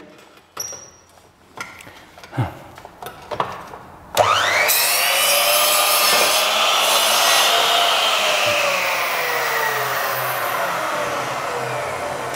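Electric compound miter saw cutting through gypsum plaster cornice: quiet handling for about four seconds, then the motor starts suddenly with a loud whine and cutting noise as the blade goes through the plaster. The whine then falls slowly in pitch over the last several seconds.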